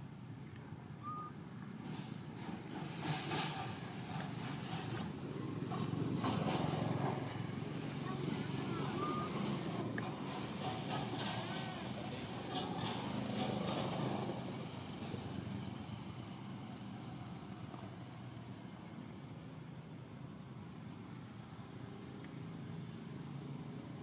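Outdoor background: a low steady hum with faint voices, louder in the middle with scattered light clicks and a few faint short chirps.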